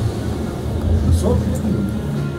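Low steady rumble inside a cable-car gondola cabin as it runs slowly through the station.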